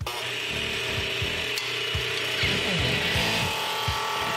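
Wood lathe spinning a wooden billiard cue butt while a hand-held tool is pressed against the turning wood, giving a steady scraping noise.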